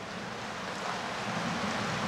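Large crowd applauding and cheering, a steady wash of noise that grows slightly louder.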